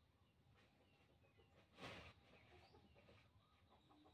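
Near silence with faint bird calls in the background and one brief soft sound a little under two seconds in.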